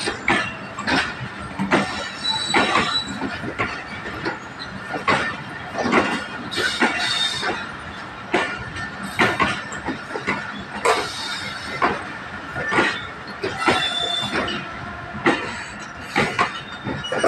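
Pakistan Railways passenger coaches rolling past, their wheels clacking over the rail joints in an uneven, repeating beat. Brief high wheel squeals come and go.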